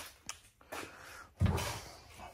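Things being handled and shifted inside an aluminum trailer tongue box: a few light clicks and knocks, then a dull thump about a second and a half in.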